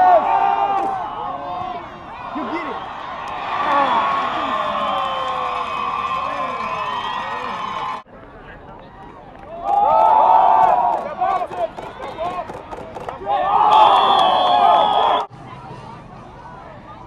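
Football crowd in the stands cheering and yelling, many voices at once. The cheering comes in loud stretches that cut off suddenly about halfway through and again near the end.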